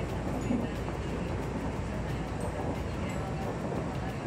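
Steady running noise of a Tobu Tojo Line commuter train travelling at speed, heard from inside the carriage: an even low rumble with no breaks.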